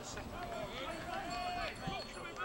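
Men shouting and calling out to each other across an outdoor football pitch during play: several drawn-out calls, with no clear words.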